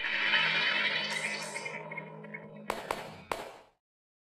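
Logo-reveal music sting: a bright shimmering swell over a held low tone, then three sharp hits in quick succession near the end before it fades out.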